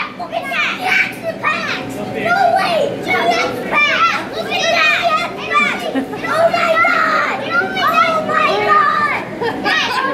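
Several children talking and calling out at once, their high voices overlapping throughout.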